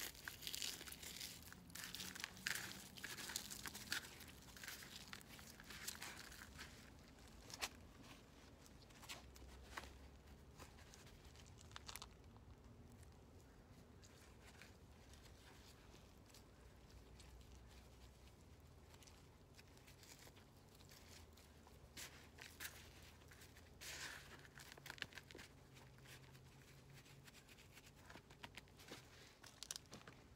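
Faint rustling and crackling of potting soil being tipped out and pressed down by gloved hands in a black plastic plant pot. A dense run of scrapes in the first few seconds, scattered soft clicks through the middle, and another short burst of rustling about 24 seconds in.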